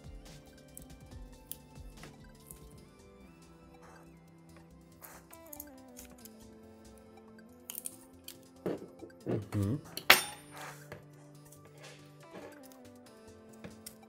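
Background music with steady held tones, over small clicks and clinks of a pry tool working a glued circuit board loose from a smartphone's frame, with a louder sharp click about ten seconds in.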